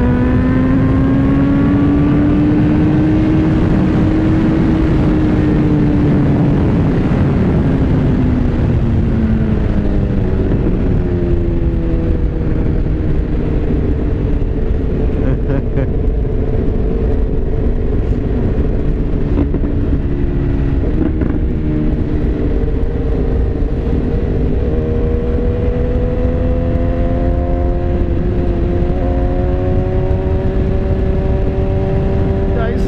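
BMW S1000R's inline-four engine running at road speed under a constant rush of wind noise. The engine note rises slightly, falls away as the bike slows, runs steady, then climbs again near the end.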